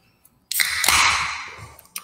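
Beer can tab snapped open: a sharp pop and a hiss of escaping carbonation that fades away over about a second and a half.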